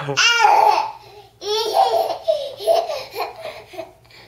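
Baby laughing in two long bursts, a short one of about a second and then a longer one of over two seconds after a brief pause.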